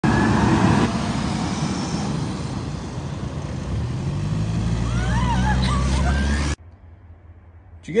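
Forklift engine running, its note rising and growing louder from about halfway through. About five seconds in, high warbling, bird-like calls sound over the engine, and everything cuts off abruptly after six and a half seconds.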